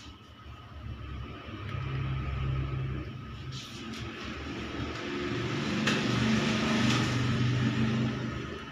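A low rumble that swells about two seconds in, eases, and swells again for the second half, with a hiss over it and a couple of sharp clicks.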